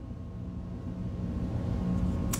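Steady low hum of room tone with a faint steady tone in it, slowly growing louder.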